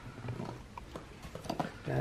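A few faint plastic clicks and knocks as the lid-and-hose unit of a Breg cold therapy cooler is handled and brought over to the filled cooler.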